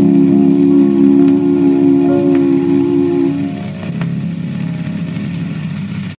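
The final held chord of a 1928 vocal duet with piano, played from a shellac 78 rpm record on an acoustic gramophone. The voices hold the closing note and stop about three and a half seconds in. A softer chord tails off under the record's surface hiss and a few light crackles.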